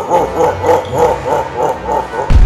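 Logo sting sound effect: a pitched sound repeating about four times a second and fading away as echoes.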